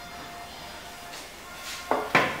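Quiet steady room tone, then near the end a sharp clatter as a metal roasting tray with a wire grill rack is set down on a stone countertop.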